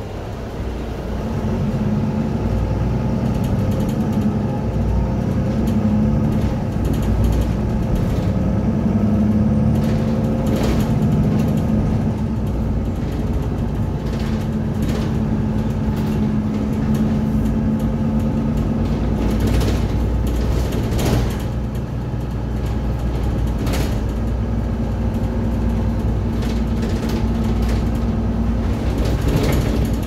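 Mercedes-Benz Citaro single-deck bus heard from inside the passenger cabin while under way: the diesel engine and drivetrain running, their pitch rising and falling as the bus picks up and changes speed. Interior fittings rattle and knock now and then.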